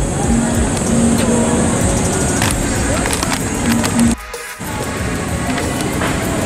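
Outdoor city ambience through a handheld camera's microphone: a steady low rumble of traffic and wind noise, with faint scattered tones over it. The sound drops out briefly about four seconds in, then picks up again.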